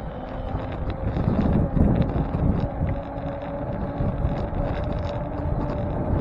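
Wind buffeting the microphone of a camera on a moving bicycle, with low rumble from riding over asphalt. A faint steady hum runs underneath, rising slightly in pitch.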